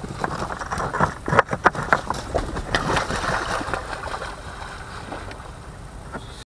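A released great cormorant leaving its cardboard box for the water: a quick run of knocks, scuffles and splashes over a rushing background noise, thinning out after about three seconds.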